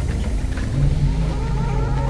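Experimental electronic noise music: a dense low rumble, with a steady low tone coming in a little under a second in.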